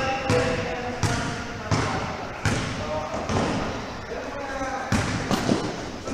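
A basketball being dribbled on an indoor court floor, a bounce roughly every two-thirds of a second, each echoing in the hall, with players' voices calling over it.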